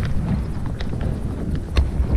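Hoofbeats of a ridden horse moving over grass, a series of sharp, uneven knocks over a low rumble.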